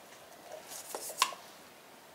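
Light knocks and scrapes of a glass candle jar being handled as its wooden lid comes off, with one sharp click a little past the middle.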